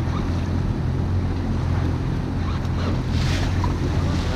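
Steady low hum of an idling boat engine, with wind buffeting the microphone and water sloshing against the hull.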